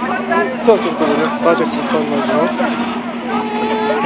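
Several people talking and calling out over one another in a crowd, with a steady low hum underneath.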